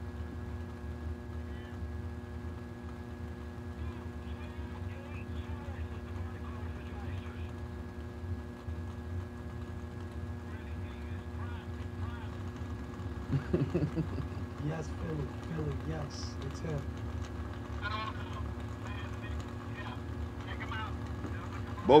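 Drag racing cars idling steadily behind the starting line, a low, even engine rumble. Faint distant voices come in over it about two-thirds of the way through.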